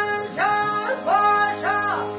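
Live Albanian folk music from a small ensemble of long-necked plucked lutes, violin and accordion, with singing. The melody moves in short notes that each slide up into a held pitch, three times in quick succession.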